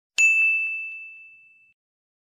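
A single bell-like 'ding' sound effect from a subscribe-button animation. It strikes a moment in and rings out with one clear high tone, fading away over about a second and a half.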